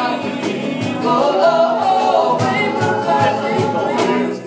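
A live band playing a song: several voices singing together in harmony over guitar, with a steady beat.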